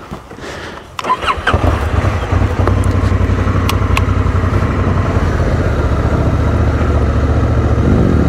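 Honda Africa Twin's parallel-twin engine starting about a second in, then running steadily at idle.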